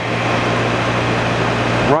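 Rush Model 380 drill grinder running: its 1 HP electric motor and grinding wheel give a steady low hum under an even whirring hiss.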